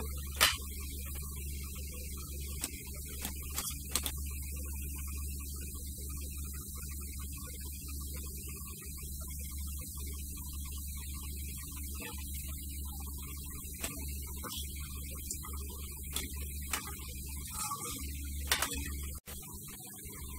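A steady low electrical hum, with faint scattered clicks and ticks over it.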